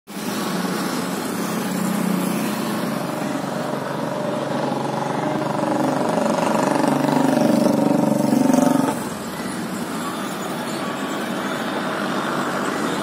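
An engine running with a steady drone and pitched hum, growing louder until about nine seconds in and then dropping off suddenly.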